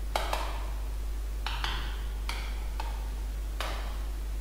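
Sharp clicks from selecting and opening items in whiteboard software: two quick double-clicks in the first half, then a few single clicks. A steady low electrical hum runs underneath.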